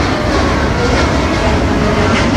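Jet airliner's engines at takeoff thrust: a steady, loud rumbling roar.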